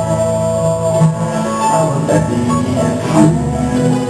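Live bluegrass band playing, with banjo, mandolin, acoustic guitar, lap-played steel guitar and upright bass.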